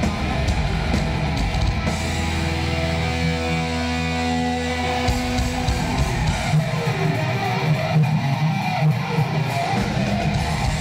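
Thrash metal band playing live: distorted electric guitars, bass and drums in an instrumental passage, with a chord held for a few seconds near the middle before the riffing picks up again.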